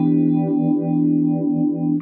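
Sustained electric guitar chord ringing through the MayFly Audio Sketchy Zebra pedal's phase shifter. The phaser sweep moves its tone slowly back and forth between a bassy and a trebly sound.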